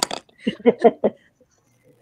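A short burst of laughter: four or five quick, evenly spaced voiced syllables in the first second, then a pause.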